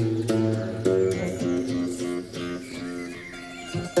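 Background music: plucked string notes over a steady low bass, growing quieter in the last second.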